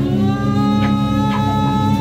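Improvised band music: a single held melodic tone, rich in overtones, slides up slightly at the start and then sustains over a steady low drone, with a few scattered percussion taps.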